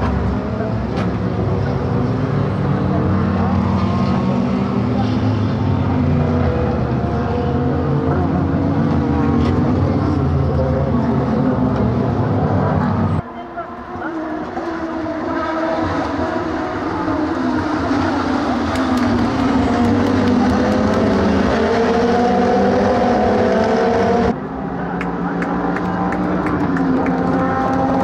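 A field of SUPER GT race cars' engines running together, first as a deep, bass-heavy drone. About 13 seconds in the sound changes abruptly to many engines revving higher, their pitches sliding up and down as the pack of cars accelerates and passes through a corner around the race start.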